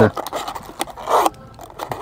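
Light clicks and scraping of plastic food containers and a cup being handled on a table, with a brief rustle about a second in.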